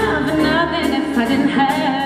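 A female vocalist singing sustained notes with vibrato over an orchestra accompaniment.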